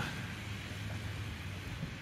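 Low, steady outdoor street ambience: an even hiss with no distinct events.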